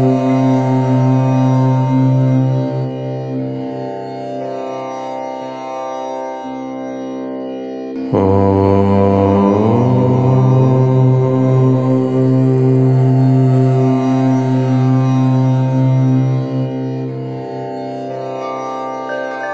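Deep male voice chanting a long, held "Om" that fades a few seconds in; a new Om starts abruptly about eight seconds in and is held until near the end.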